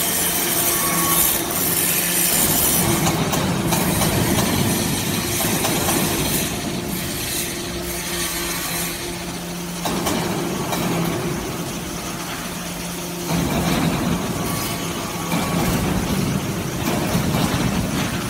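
SBJ-360 hydraulic metal-chip briquetting press line running: a steady low hum from the press's hydraulic power unit under the scraping rattle of metal chips on the feed conveyor. The sound shifts about ten seconds in and grows louder again about three seconds later.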